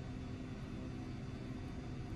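Faint, steady low hum of room ventilation, an even drone with no other events.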